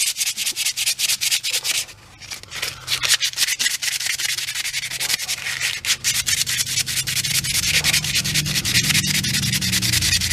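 Hand sanding of a wooden hammer handle with sandpaper: quick back-and-forth scraping strokes, several a second, stripping off the varnish. The sanding pauses briefly about two seconds in.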